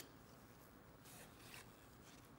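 Near silence, with a faint swish of cardboard trading cards sliding against each other as they are handled, about a second in.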